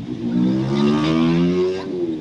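A road vehicle's engine accelerating, heard from inside a car: its pitch rises steadily for about a second and a half, then eases off near the end.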